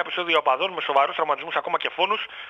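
Speech only: a man talking continuously, reading aloud in Greek.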